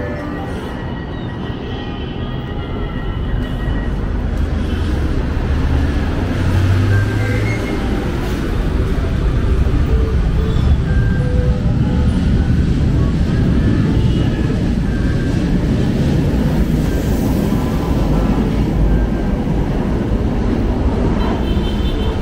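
LRT Line 1 light-rail train pulling out of an elevated station. Its low rumble of motors and wheels on the rails builds from about four seconds in and stays loud as it runs past.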